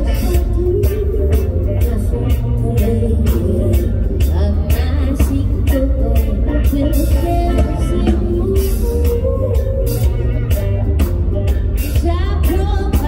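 A live band playing, with a drum kit keeping a steady beat over heavy bass, and a woman singing lead into a microphone, heard as loud amplified concert sound.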